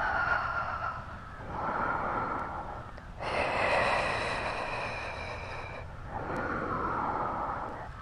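A woman breathing hard with effort during seated scissor kicks: four long, noisy breaths, the loudest and longest lasting about three seconds in the middle.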